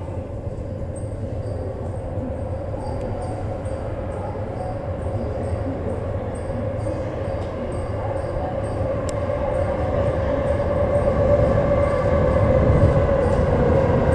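JR East E233 series 2000 subway-through train approaching through the tunnel: its rumble and a steady hum grow steadily louder, the hum dipping slightly in pitch near the end as it slows.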